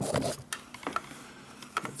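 A few light clicks and taps, about half a second apart, some with a short metallic ping, as a multimeter probe tip is moved and touched against the calculator's circuit board and chip pins.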